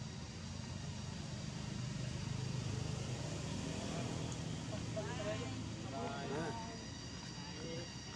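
A low, steady engine rumble, like a distant motor vehicle, swelling about two to three seconds in, with a few short high gliding calls between about four and seven seconds in.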